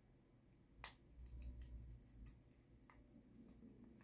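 Near silence with a couple of faint, sharp clicks, one about a second in and another near three seconds, from hands handling a piercing needle.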